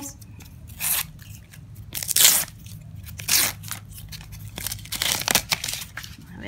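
A paper sticker packet torn open and crinkled by hand, with the stickers pulled out. It makes a series of short rustling tears, the loudest about two seconds in.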